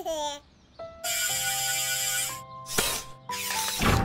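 Cartoon soundtrack: sustained music notes with a loud hiss of sound effect laid over them about a second in and shorter hissing bursts near the end, after a brief baby's voice right at the start.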